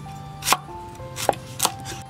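A cleaver chopping food on a wooden cutting board: three sharp chops, about half a second in, then two in quick succession past the one-second mark.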